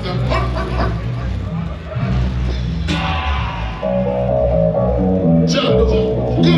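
Dub/steppers music played loud through a sound system, with a deep, heavy bass line. A held melody line comes in about four seconds in, and a falling swept effect sounds near the end.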